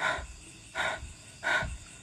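A frightened person breathing hard in short, rapid breaths, about one every three-quarters of a second.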